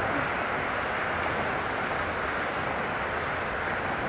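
Steady rush of road traffic on a nearby bridge, with a few faint light clicks over it.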